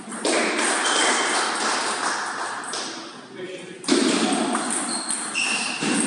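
Indistinct voices in a large hall, with a few short pings of a table tennis ball between points.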